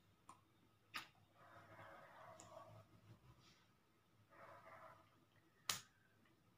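Faint sounds of hands signing: a few short sharp slaps of hands meeting, the loudest near the end, with soft rustling in between.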